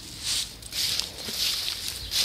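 Footsteps swishing through dry grass, an irregular run of rustles about every half second.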